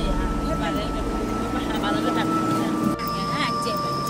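Voices over the low rumble of a vehicle, with a steady high tone; the sound changes abruptly about three seconds in.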